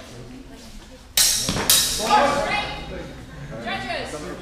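Two sharp sword strikes about half a second apart in a sports hall, followed by shouting voices as the exchange is called.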